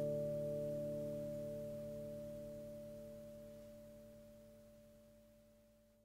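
The song's final guitar chord ringing out and slowly dying away, with no new notes struck.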